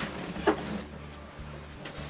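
Movement sounds of someone getting up from an office chair, with one short knock about half a second in, over a faint steady low hum.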